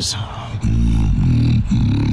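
Beatboxed bass: a sharp snare-like hit at the start, then from about half a second in a loud, deep buzzing bass with a brief break near the end.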